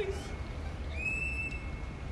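A single high-pitched whistled call, held steady for about half a second, about a second in, over a low rumble.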